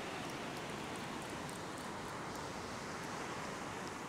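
Steady wash of surf breaking on the beach mixed with strong wind noise.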